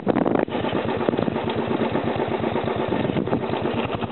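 Motorcycle engine running under way, heard as a fast, even train of firing pulses, with a brief drop in level about half a second in.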